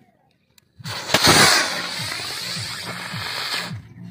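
Large firework rocket tied to a kite firing: after a moment of silence, the burning rocket motor gives a loud, steady hissing whoosh that starts about a second in, lasts nearly three seconds and cuts off abruptly near the end.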